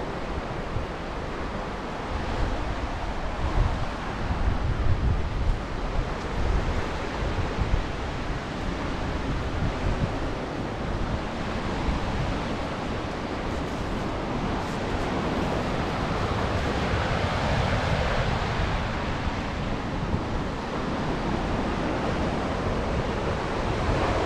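Lake Michigan waves washing onto the shore below the bluff, a steady surf noise, with wind gusting on the microphone.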